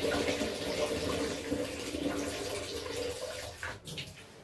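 Dye water streaming and splashing back into a plastic bucket as a soaked silk dress is lifted out of the dye bath, the flow easing off toward the end, with a short sharp sound just before it ends.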